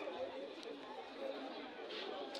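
Indistinct chatter of several voices from players and onlookers around a football pitch, with no clear words.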